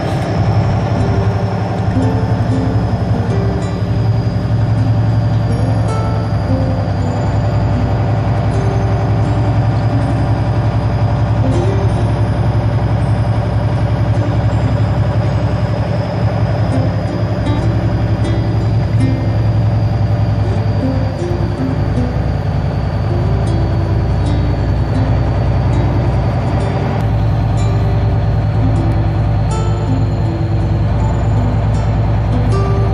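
Diesel engine of a big truck running steadily at road speed, heard from inside the cab, with music playing over the engine drone.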